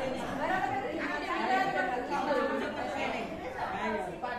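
Chatter: several people talking at once, their voices overlapping in a large room.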